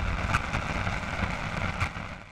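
Fading tail of an outro logo sound effect: a low rumble and hiss dying away after a hit, with two faint ticks, one just after the start and one near the end.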